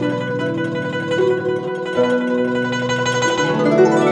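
Slow, calm Chinese-style instrumental music: a plucked-string melody over sustained low tones.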